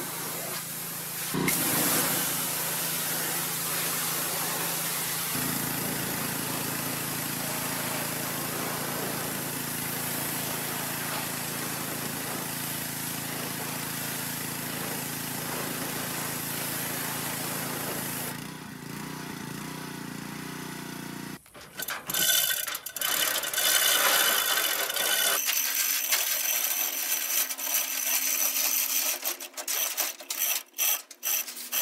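Pressure washer spraying water onto the rusted sheet metal of a 1965 VW Beetle: a steady hiss over a low pump hum for most of it, turning choppy and uneven in the last third as the jet is moved around.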